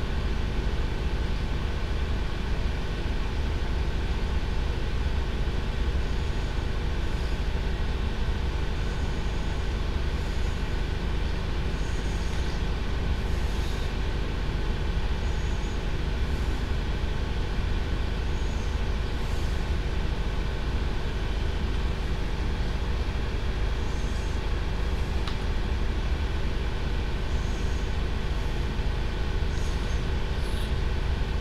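Steady low rumble with a constant, unchanging hum, like a running machine or motor.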